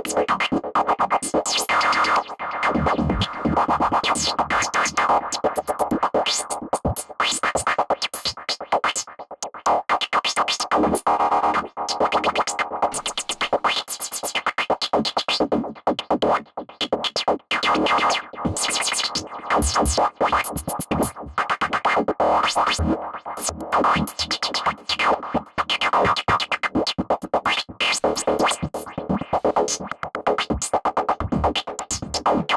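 Soloed noise lead synth from a dark prog psytrance track, chopped into choppy, stuttering repeats by a tempo-synced auto repeater and echoed by a ping-pong delay. Its tone shifts as the filter cutoff and drive are turned up.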